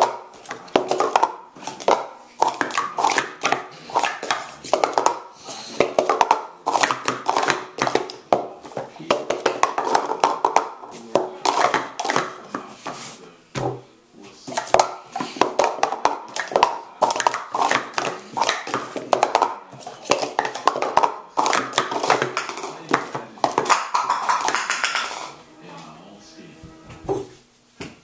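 Green Speed Stacks plastic sport-stacking cups clacking in rapid runs as they are stacked up and down on a stacking mat in the cycle sequence. There is a brief pause about halfway through, with a voice in the background.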